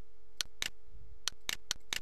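Six sharp, unevenly spaced clicks of a computer mouse, over a steady electrical hum.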